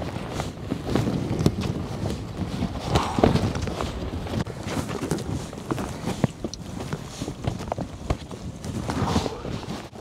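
Hiking boots knocking and scuffing on wet rock and loose stones during a steep scramble: a fast, uneven run of sharp taps and scrapes over rustle and wind on the microphone.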